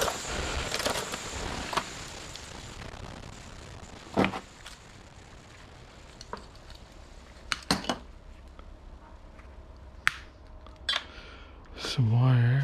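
Thin metal LED backlight strips from a flat-screen TV being handled over a scrap-covered bench: a rustle at first, then scattered light metallic clinks and knocks.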